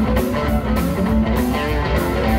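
Live electric blues band playing: electric guitar notes over a steady bass line and drums with regular cymbal strokes.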